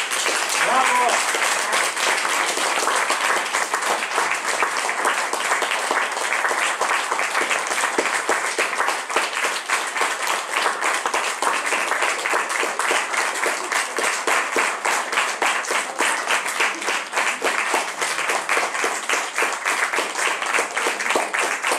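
A small audience applauding steadily, many hands clapping close together. A voice calls out briefly over the clapping about a second in.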